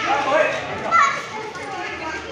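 Children calling out and shouting while they play, with a sharp high-pitched shout about a second in.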